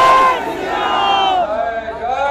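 Political slogan shouting: a man's voice over the PA draws out 'Jai Shri Ram' in long, held shouts, with a crowd shouting along. The loudest shout comes right at the start.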